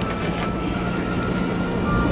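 Steady low rumble and hum inside a Sapsan high-speed train carriage, with faint background music over it.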